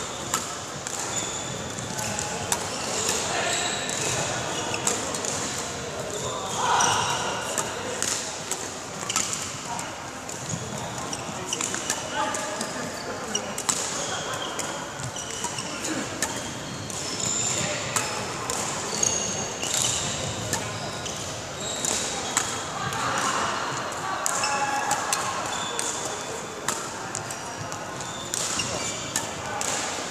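Badminton rackets striking shuttlecocks, a series of sharp cracks about a second or two apart, over a steady murmur of voices.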